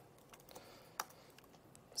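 Faint keystrokes on a computer keyboard as a short terminal command is typed, a handful of light clicks with the clearest about a second in.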